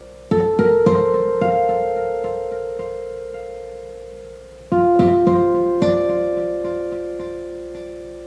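Chiming acoustic string harmonics: two arpeggiated groups of about four bell-like notes, one just after the start and one a little past halfway, each left to ring and fade slowly.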